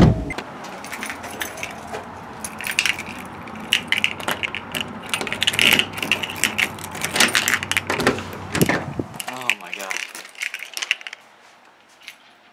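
A sharp knock at the very start, then keys jangling and clicking along with a door knob and latch being worked, for about the first nine seconds; quieter after that.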